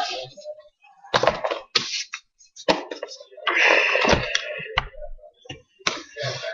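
Playing cards being shuffled and handled by hand on a wooden tabletop, in a few irregular bursts with short gaps between them.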